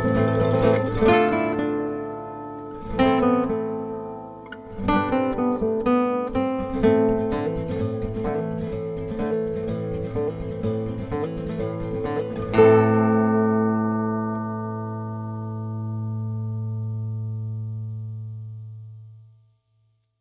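Background music on plucked strings, a run of plucked notes. About two-thirds of the way in, a final chord is struck and left to ring, fading slowly away to silence just before the end.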